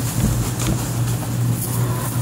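Outdoor air-conditioning unit running: a steady low hum with an even rushing noise over it, loud on the microphone.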